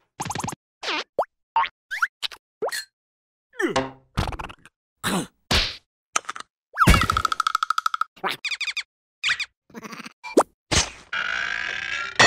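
Cartoon sound effects: a quick run of short, separate plops, boings and whacks, several sliding in pitch. About seven seconds in comes a longer held tone that pulses rapidly.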